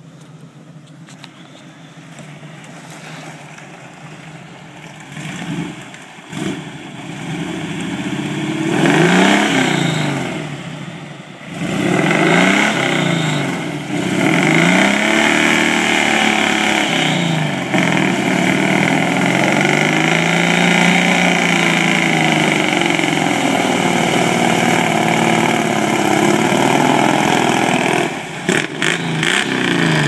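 Jeep CJ7's 258 cubic-inch (4.2 L) straight-six engine revving hard through a mud bog, its pitch rising and falling again and again. It grows louder as the Jeep nears, dips briefly, then stays loud from about twelve seconds in, with short breaks near the end.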